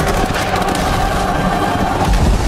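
Action-film battle sound mix: a dense, steady rumble of effects with a musical score underneath.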